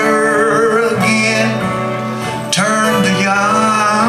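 Live acoustic country music: a man singing over strummed acoustic guitars and a mandolin, at a slow tempo.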